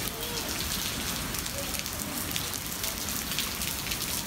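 Steady rain falling, a continuous patter, with faint voices in the background.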